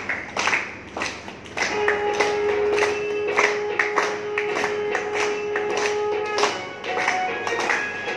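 A group clapping in a steady rhythm to devotional aarti music, with a long held tone sounding from about two seconds in until well past the middle.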